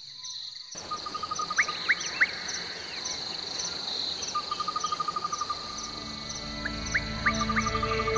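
Outdoor sound cuts in suddenly about a second in: insects trilling steadily in a high, evenly pulsing chorus over a noisy hiss, with birds giving short rising calls in two groups of three or four. Background music fades in during the second half.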